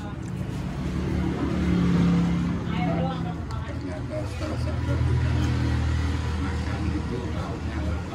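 Motor-vehicle traffic on the street. A low engine drone swells about two seconds in and again from about five seconds, with voices in the background.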